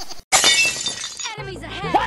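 A sudden crash of shattering glass, an edited-in sound effect, about a third of a second in, ringing away over about a second; a voice follows near the end.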